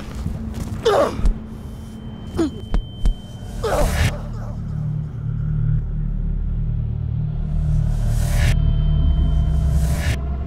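A man groaning and gasping in pain in the first few seconds, then a low cinematic rumble with whooshes that swells in loudness from about halfway and stays loud to the end.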